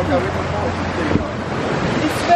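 Small sea waves washing in over shallow water at the shore, with wind buffeting the microphone.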